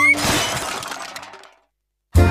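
Cartoon crash sound effect for a fall: a sudden shattering crash that fades away over about a second and a half, then silence.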